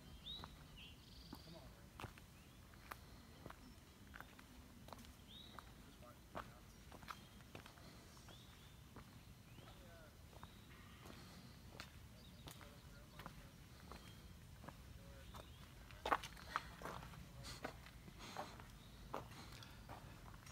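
Quiet footsteps on granite slab and packed dirt, a scatter of faint scuffs and ticks, louder for a few steps about sixteen seconds in.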